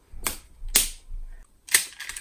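Smashers toy ball being struck against a palm: three sharp cracks, the middle one the loudest, as its plastic shell breaks into pieces.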